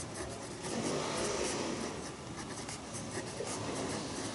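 Pen writing on paper: a run of short, scratchy strokes.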